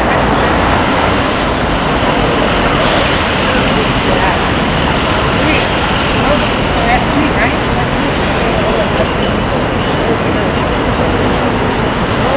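City street ambience: steady traffic noise with indistinct chatter of people nearby.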